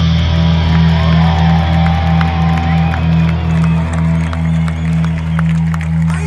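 Rock band's final chord ringing out through a festival PA as a held, slightly pulsing low note, with the crowd cheering over it.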